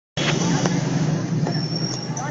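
Outdoor background noise at a football pitch: a steady low rumble like distant road traffic, with faint voices and a few small clicks. A thin high tone sounds in the last half second.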